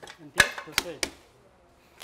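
Three sharp knocks in quick succession, the first the loudest, from hard objects being handled at a metal bench vise, with faint murmured voices around them.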